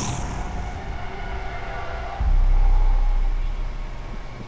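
Horror film trailer soundtrack: faint, eerie held tones, then about two seconds in a deep low rumble swells in and slowly fades away.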